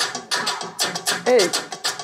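Playback of an electronic Afro-percussion beat at 130 BPM, a fast, even run of drum and snare hits, with a short shouted "hey" about a second in.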